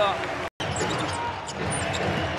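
Basketball game in play on a hardwood court: the ball being dribbled, with short high squeaks and a steady arena hubbub. The sound drops out for an instant just before the first half-second, at an edit.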